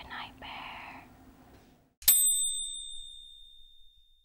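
A soft whispered "shh", then, about two seconds in, a single bright bell-like ding that rings out and fades over about a second and a half.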